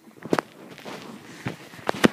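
Play noise from a husky being wrestled by hand on a bedspread: several sharp knocks, the loudest about a third of a second in and a pair near the end, with rustling of bedding in between.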